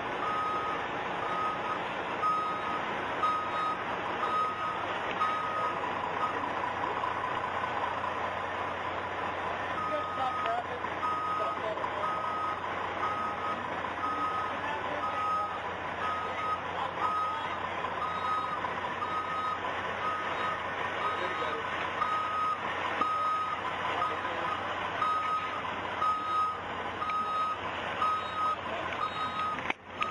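Reversing alarm of a Los Angeles Fire Department rescue ambulance, beeping at an even pace of about one beep a second, with a pause of a few seconds about a fifth of the way in. Background street noise and voices run underneath.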